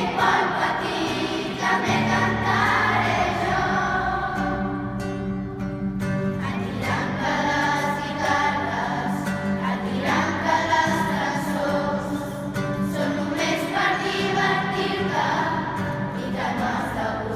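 A children's choir singing a song together, many voices at once, over a steady low sustained accompaniment.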